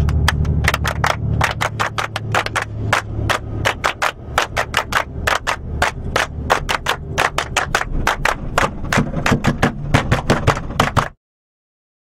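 A group of people clapping together in a fast, steady rhythm of about five claps a second over the low hum of a bus engine. It cuts off suddenly near the end.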